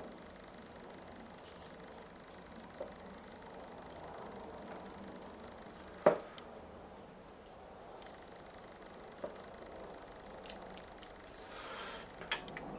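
Quiet room tone with faint strokes of a small watercolour brush on paper, and one sharp tap about halfway through.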